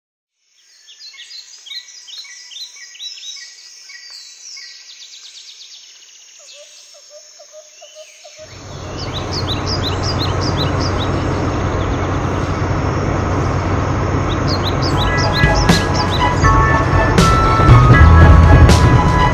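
Birds chirping in quick short calls. About halfway through, a loud, steady rumbling noise swells in and covers them. Musical notes come in near the end.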